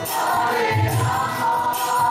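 A group of women singing a devotional kirtan chant together, with hand clapping, metallic jingling percussion and a low drum beat about a second in.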